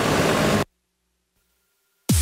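Engine of a small utility tractor hauling branches, running with a loud rushing noise, cut off suddenly about two-thirds of a second in; near silence follows.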